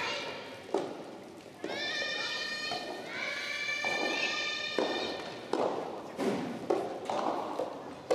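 Two drawn-out, high-pitched shouts of encouragement in a large reverberant hall, each held for one to two seconds. Scattered sharp thuds of a soft tennis ball bouncing on the wooden court floor.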